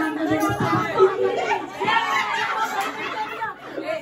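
Several women talking and laughing over one another in a room, with no drumming or singing.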